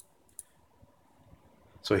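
Four short, sharp computer mouse clicks spread about half a second apart, the second one the loudest. A man's voice begins right at the end.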